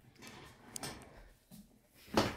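Faint handling noise from furniture being moved: a couple of light clicks and knocks just under a second in and again near one and a half seconds, over soft rustling.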